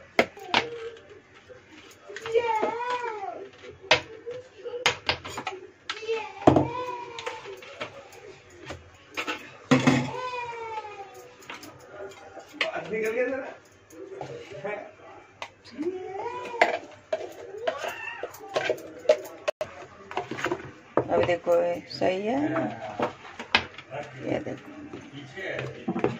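Indistinct high-pitched voice sounds, rising and falling in pitch, come and go throughout, among short sharp clicks and scrapes of a steel spoon against a steel mixer-grinder jar as thick coconut chutney is scooped out into a bowl.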